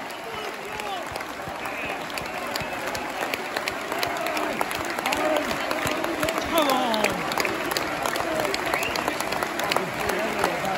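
A football crowd in a stadium stand applauding, with sharp hand claps close by and scattered shouts from the fans, one man's call sliding down in pitch about two-thirds of the way through.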